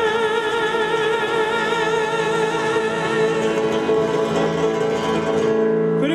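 A woman singing one long held note with vibrato over strummed acoustic guitar, live on stage. The note fades just before the end, and a new sung phrase begins right at the end.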